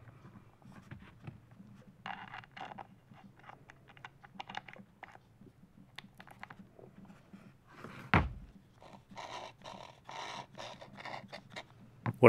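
Hand handling noises from taking apart the Makita HR2400 rotary hammer's gear mechanism: small clicks and scrapes of oily metal and plastic parts, with one louder thump about eight seconds in.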